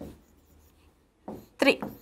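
Faint scratching of a pen drawing on a digital board's screen, heard in the pause between two counted words.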